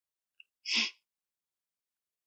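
A man sneezes once, short, just under a second in, after a faint click.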